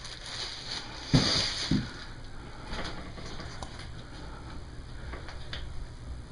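A short, breathy grunt of effort about a second in, then faint clicks and rustles of a hand squeezing a raw apple that does not break.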